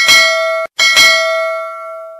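Notification-bell sound effect: two bright bell dings. The first is cut off short, and the second rings on and fades away.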